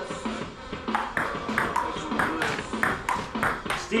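Ping pong rally: the ball clicks back and forth between paddles and table in a quick, fairly even run of about three hits a second, starting about a second in.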